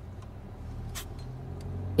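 A car engine running with a low, steady hum that grows slightly louder, with a few faint clicks, the clearest about a second in.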